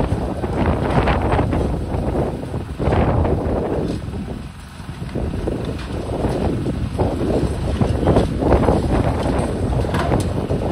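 Long-reach demolition excavator breaking into a concrete building: its engine running under load, with rubble crunching and falling in uneven surges, mixed with wind buffeting the microphone. The noise drops away briefly about halfway through.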